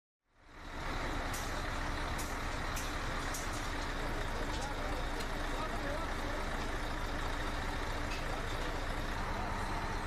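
Steady low rumble of an idling truck engine, with a few faint clicks and indistinct voices in the first few seconds.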